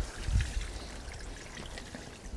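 Water pouring in a steady stream out of a tipped plastic bait bucket onto wet pavement, as the bait water is drained. There is a soft thump about a third of a second in.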